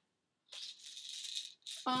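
Pills rattling inside a plastic prescription bottle as it is picked up and shaken, lasting about a second.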